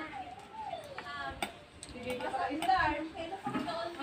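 Faint voices in the background, with a few light clinks of a metal spoon against a ceramic bowl while eating.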